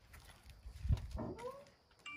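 A short, high-pitched vocal call whose pitch rises and then falls over about half a second, just after a low thump about a second in.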